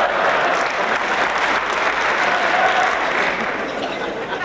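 A large audience applauding in a hall, the clapping easing off slightly near the end.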